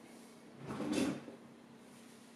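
A single brief handling noise, lasting under a second, about halfway through.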